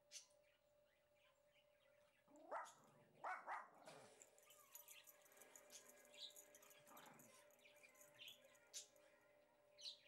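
A few short animal calls, each sweeping up in pitch, about two and a half to four seconds in and once more near seven seconds, over a faint steady hum.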